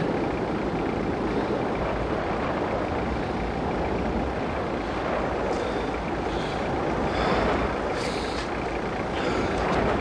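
A vehicle engine idling, a steady low rumble with an even haze of noise.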